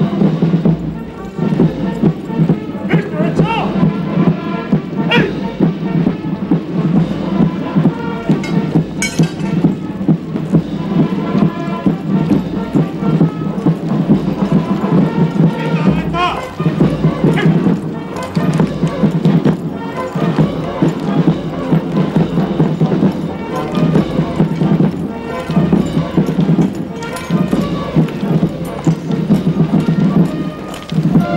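A military band playing a march during a parade march-past, with a steady rhythmic beat.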